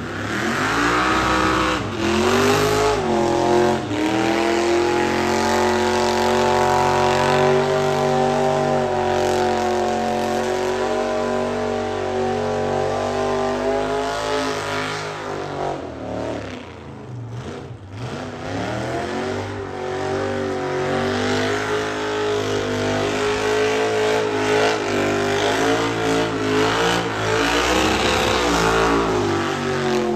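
Car engine held at high revs while the car spins its tyres in loose dirt. The revs climb over the first few seconds and hold, drop briefly a little past halfway, then climb and hold again until near the end.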